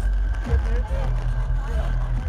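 Live electronic music played loud through a festival sound system: a heavy, steady bass under a held high tone, heard from inside the crowd, with people's voices calling out nearby.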